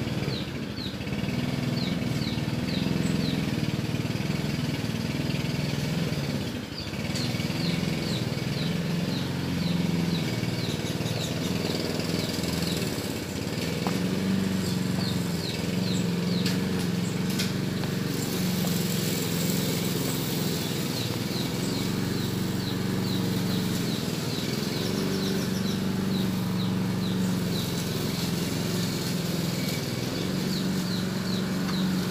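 An engine running steadily with a low, slightly wavering hum, and a rapid series of short high chirps repeating a few times a second over it.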